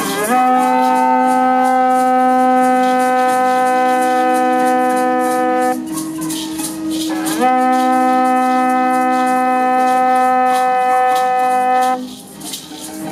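Conch-shell trumpet blown in two long notes, each scooping up in pitch at its start and then held steady for about five seconds. Hand rattles shake throughout.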